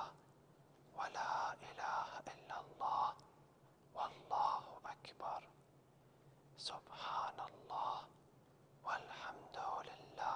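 A man whispering the Arabic tasbihat of Islamic prayer, 'Subhanallah walhamdulillah wa la ilaha illallah wallahu akbar', said over and over in short phrases with pauses of about a second between them.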